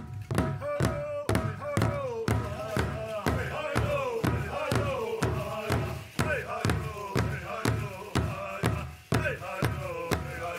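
Pow wow drum group: singers seated around one large drum strike it together in a steady even beat, about two beats a second, while singing high phrases that fall in pitch.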